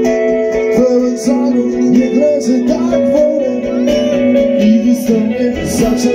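Live band music through an outdoor PA, with guitars carrying a steady song and a melody line gliding over held chords.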